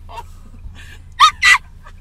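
A person imitating a small dog crying: two short, loud, high yelps in quick succession a little past a second in, over a low steady car-cabin rumble.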